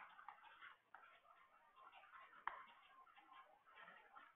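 Faint scratching and ticking of a stylus writing on a pen tablet, with a few sharper taps, the clearest at the very start and about two and a half seconds in.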